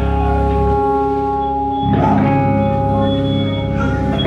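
Electric guitar and bass sounding through stage amplifiers as long, sustained ringing notes; the held tones shift to a new set about two seconds in.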